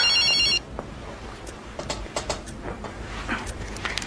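Mobile phone ringing with a high, warbling electronic trill that cuts off about half a second in, followed by faint rustling and small clicks.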